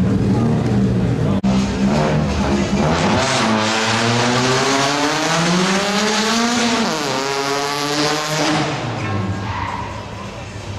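Rally car engine accelerating hard: its pitch climbs for several seconds, drops at a gear change about seven seconds in, climbs again, then fades as the car draws away.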